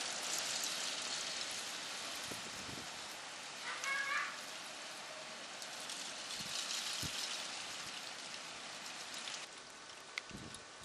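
Graupel pellets falling thick and pattering on surfaces, a steady high hiss that swells near the start and again about six seconds in. A brief pitched sound about four seconds in.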